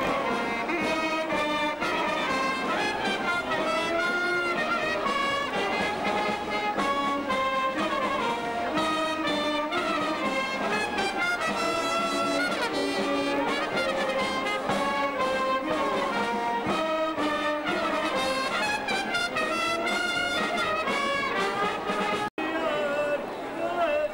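A marching brass band of trumpets, trombones and saxophones playing a continuous processional melody.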